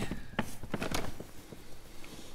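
A stack of hard plastic equipment cases being pushed aside, with a few short knocks and scrapes in the first second.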